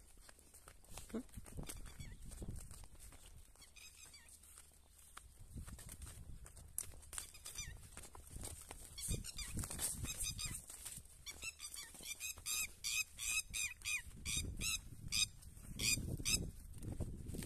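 A downed bird calling in a rapid series of short, harsh cries that grow louder and quicker in the last few seconds. Low thumps of running footsteps through the crops run underneath.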